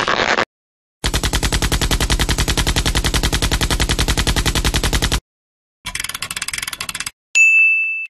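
Cartoon sound effect of rapid machine-gun fire: one long, even burst of about four seconds, then after a short gap a shorter, lighter burst. Near the end a bright, sustained ding rings out.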